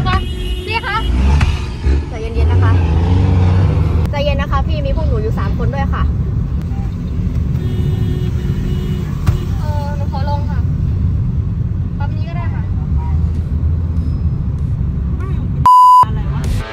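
Cabin noise of a taxi on the move, heard from the back seat: a steady low engine and road rumble. A short, steady, high electronic beep sounds just before the end.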